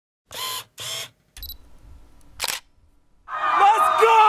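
Camera shutter sound effects for a logo intro: two short shutter bursts, a quieter buzzing stretch and a sharp click. In the last second a loud, sustained pitched sound with bending pitch comes in.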